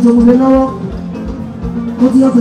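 Live band music with a male singer through a microphone and PA: he holds one long note for most of the first second, then the drums carry on alone with a steady beat of about three strokes a second.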